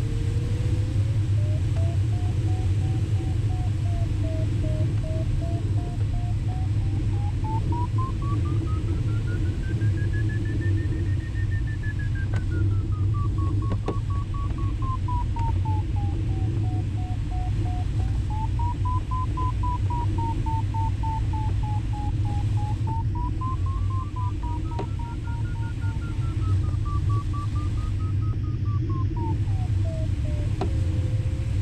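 A glider variometer's audio tone sliding slowly up and down in pitch, highest about ten seconds in, its pitch following the glider's rate of climb or sink. Under it is a steady rush of airflow in the cockpit of a Schempp-Hirth Ventus 2cT in gliding flight.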